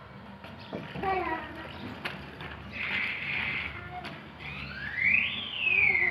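Young children's voices: short calls and a shout around the middle, then a loud squeal near the end that rises and falls in pitch.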